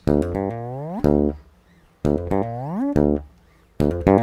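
Fretless electric bass playing the same phrase twice. Plucked open notes with hammer-ons lead into a long slide up the neck that rises steadily in pitch, followed by a short, clipped open D note.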